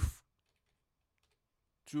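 A few faint computer keyboard keystrokes, typing a short number into a software field.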